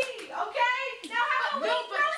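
Overlapping children's voices talking in a classroom, the words unclear, with a sharp knock or clap right at the start.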